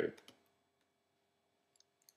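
Faint computer mouse clicks over near silence: a few quick ones just after the start, then single clicks near the end as the on-screen page is turned.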